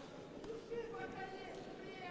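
Faint men's voices calling out from cageside in a drawn-out, held way, over the low hubbub of the arena.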